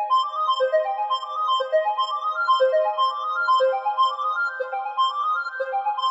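Channel Robot LEADz software synthesizer lead patch ('Popcircle' preset) playing a fast arpeggio of short, bright notes that climb in steps and restart from a low note about once a second.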